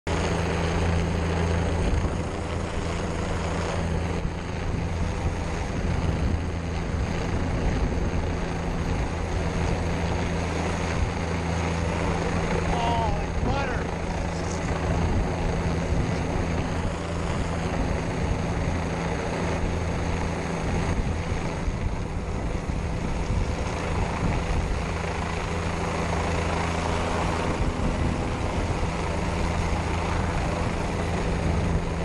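Helicopter rotor and engine running steadily overhead, heard from the end of a long line beneath it, a steady low drone with rotor wash buffeting the microphone.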